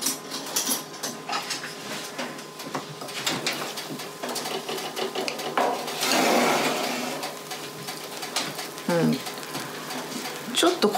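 Metal baking trays clinking and scraping in a gas oven as they are pulled out on the racks, with a rush of noise about six seconds in while the oven door stands open. A brief murmur of voice near the end.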